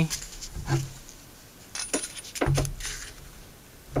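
Hands wrapping blue tape around a rolled-paper blowgun dart: a few short crinkles and clicks of tape and paper, with quieter stretches between.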